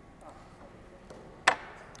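A single sharp snip of fine-pointed fly-tying scissors cutting the tip off a pheasant feather, about one and a half seconds in.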